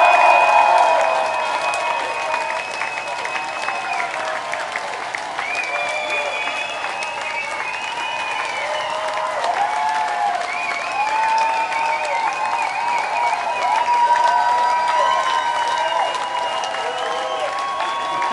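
Concert crowd applauding and cheering, with long wavering whistles over the clapping. It is loudest in the first second, then settles into steady applause.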